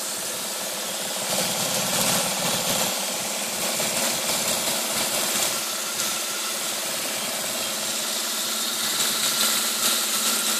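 Water jet spraying and splashing inside the enclosed box of a home-made model hydroelectric generator as it drives the turbine, with a steady mechanical hum running underneath.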